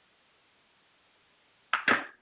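Faint hiss of an open phone line, then near the end a short loud burst of noise in two quick strokes from the caller's end, which the host takes for kitchen noise.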